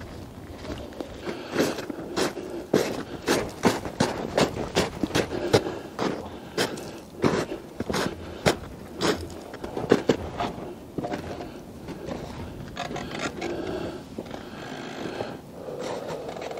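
Footsteps crunching through snow, about two steps a second, growing fainter and sparser after about ten seconds.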